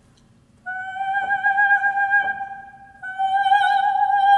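A trained soprano voice sings a sustained high note near G5 on an open vowel, twice, with a short breath between. The first note is held almost straight, as a senza vibrato demonstration; the second blooms into vibrato as it goes on.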